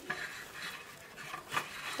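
Plastic cling film rustling and crinkling as a film-wrapped log of sablé dough is handled and pressed into a stainless-steel rectangular mould, with one brief sharp sound about one and a half seconds in.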